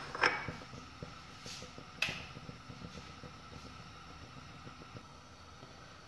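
Faint steady kitchen background hum, with a sharp click about two seconds in and a couple of small clicks at the start.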